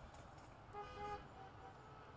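Car horns honking faintly: several short toots in quick succession, starting about two-thirds of a second in.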